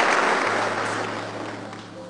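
Congregation's applause fading away over about two seconds.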